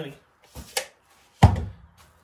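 A light click about half a second in, then a louder, sharp thunk about a second and a half in that rings out briefly: something knocked or set down in the workshop.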